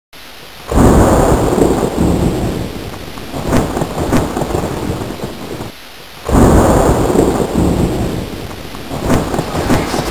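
Thunderstorm sound effect: two loud thunderclaps, one about a second in and one about six seconds in, each rolling away over several seconds above a steady hiss of rain.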